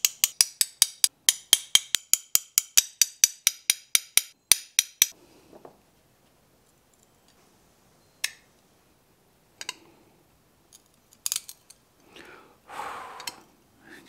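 Metal end of a Toyo glass cutter tapping the underside of a scored piece of stained glass to run the score: a fast, even series of sharp clicks, about six a second, for about five seconds. After a pause come a few single clicks and a short crunch near the end as breaking pliers pull at the glass along the score.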